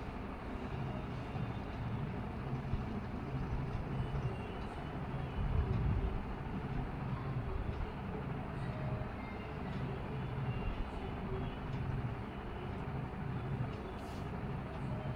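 A steady low rumble with a faint hum, like a machine running, swelling slightly about halfway through.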